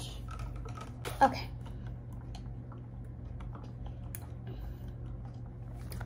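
Faint scattered small clicks and taps from handling plastic drink bottles and loop straws, over a steady low hum. A child says "okay" about a second in.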